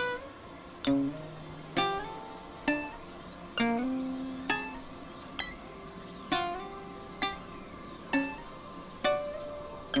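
Experimental synthesizer music: a sharp, plucked-sounding note or chord about every nine-tenths of a second, each ringing and fading before the next, in an even, unchanging pulse.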